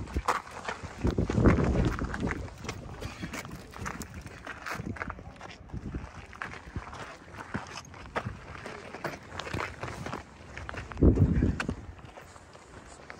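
Footsteps scuffing and crunching on bare sandstone rock, with faint voices in the background. Two louder low rumbles come about a second and a half in and near the end.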